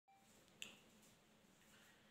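Near silence: room tone, with one brief faint click a little over half a second in.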